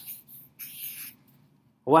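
A marker squeaking across paper as a circle is drawn, lasting about half a second.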